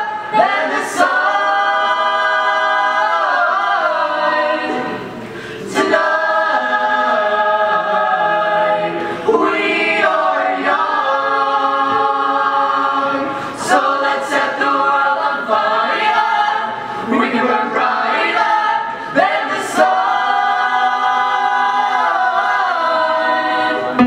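Mixed-voice choir singing a cappella in close harmony, with long held chords and a brief quieter stretch about five seconds in.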